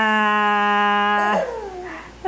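An adult's voice holding one long, steady note for over a second, then gliding down in pitch, a drawn-out playful call.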